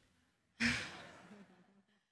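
A man sighs: one long breath out about half a second in, fading away over about a second, close on a headset microphone.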